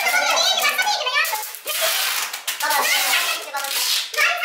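Overlapping voices of several people talking at once, with the crackling rip of duct tape being pulled off the roll as someone is wrapped to a chair.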